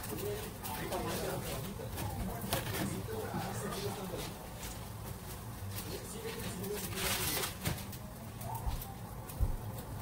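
Kitchen handling sounds: light clicks and knocks of metal tongs and utensils, and a brief rustle about seven seconds in, under faint, indistinct voices.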